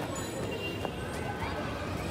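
Outdoor ambience in an open park: a steady low rumble with faint distant voices, a brief rising call a little past halfway.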